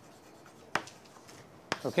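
Chalk writing and underlining on a chalkboard: faint scratching with a few sharp taps of the chalk against the board.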